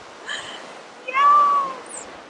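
A person's high-pitched, wordless excited squeal: one drawn-out call about a second in, rising and then falling away.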